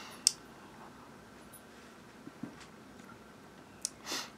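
Quiet room with a few faint, short clicks: a sharp one just after the start, small soft ones in the middle and another near the end.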